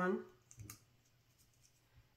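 A brief, faint plastic click about half a second in, from a small battery-operated LED tea light being handled and switched on; then only quiet room tone.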